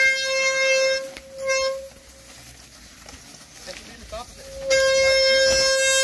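Traditional Brazilian ox cart 'singing': its wooden axle turning in the wooden bearing blocks as the cart rolls gives a steady, high-pitched, horn-like whine. It breaks off about a second in, sounds again briefly, falls quiet for about three seconds, then starts up again near the end.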